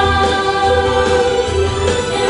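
Song sung by a choir of voices over an instrumental backing, with held notes and a steady bass line.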